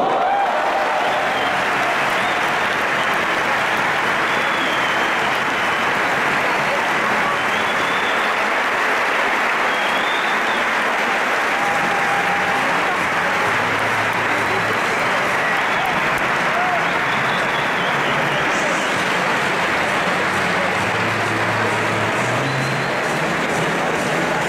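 Large arena crowd applauding, a dense, even clatter of clapping that starts suddenly and holds steady throughout.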